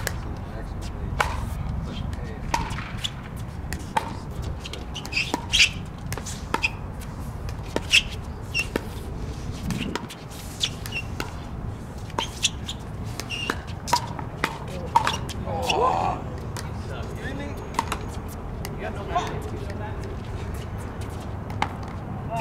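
Pickleball paddles striking a hard plastic pickleball during a rally: a string of sharp pops about one a second, over a steady low rumble.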